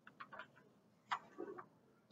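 Chalk on a blackboard while a circle is drawn: a few faint, short ticks and scratches.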